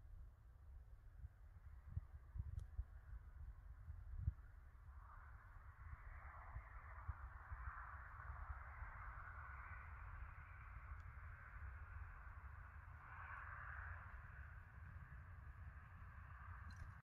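Near silence: a faint low rumble of wind on the microphone, with a couple of small bumps in the first few seconds and a faint hiss that comes up about five seconds in.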